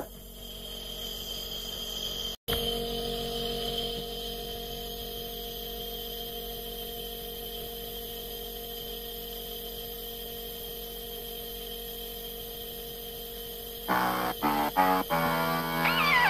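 A steady hum of several held tones, broken by a brief dropout a couple of seconds in. About two seconds before the end, music with a run of stepped notes begins.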